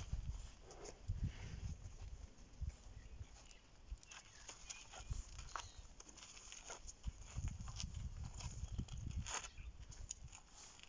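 African elephants walking past at close range on a sandy dirt road: irregular low thuds and scuffs of their feet, with scattered dry crackles. The thuds come thickest about a second in and again from about seven to nine seconds.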